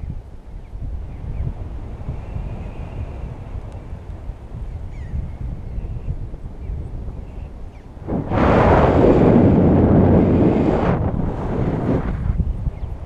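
Wind buffeting a handheld camera's microphone in paraglider flight: a steady low rumble, then a much louder rushing gust from about eight seconds in lasting some three seconds, and a shorter one right after it.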